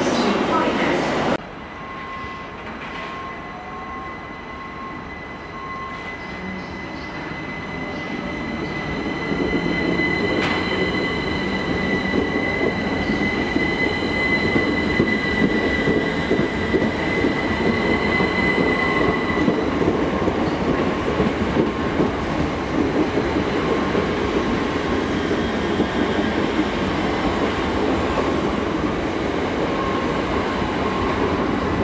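A green Great Western Railway passenger train running close past a platform. A steady high-pitched whine lasts until about two-thirds of the way through, and the rumble of the coaches rolling by grows louder from about a third of the way in and holds to the end. A louder train sound in the first second or so cuts off abruptly.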